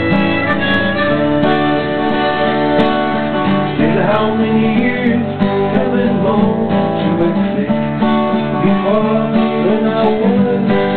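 Harmonica played over strummed acoustic guitar, an instrumental break in a folk song.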